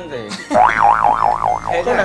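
A comic boing sound effect. A wobbling tone starts suddenly about half a second in and swings up and down in pitch about five times a second before fading near the end.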